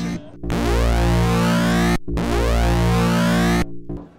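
Eurorack modular synthesizer played through a Schlappi Engineering BTFLD bit-folding module: a triangle wave converted to digital square waves and wave-folded into a buzzy, overtone-rich tone. It sounds twice, each time for about a second and a half with sweeping overtones, with a brief break between and an abrupt stop.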